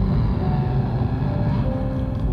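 Live violin and keyboard playing together: held violin notes over a dense, low rumbling keyboard drone.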